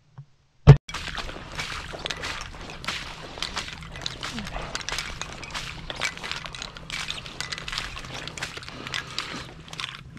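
A single Stoeger M3000 shotgun shot, very loud and sudden, under a second in. It is followed by hurried footsteps crunching and rustling through wet marsh grass as the shooter goes after a wounded duck.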